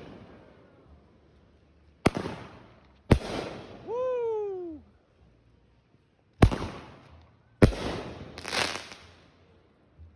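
Multi-shot consumer aerial firework cake firing: five sharp bangs at uneven gaps, each shell burst trailing off with a short echo. Between the second and third bangs a voice gives a loud, falling whoop.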